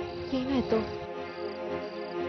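Soft background score under crickets chirping in short, repeated trills, with a brief gliding tone about half a second in.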